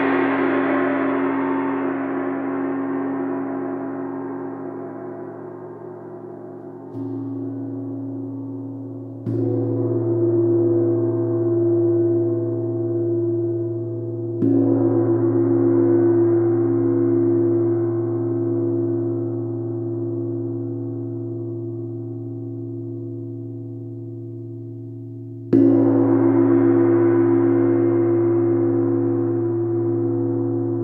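Large chau gong struck with a soft felt mallet and left to ring. A long, slowly fading shimmer from an earlier stroke is followed by four more strokes: a soft one about seven seconds in, then firmer ones at about nine, fourteen and twenty-five seconds. Each blooms into a sustained low hum with a shimmering wash above it that gradually dies away.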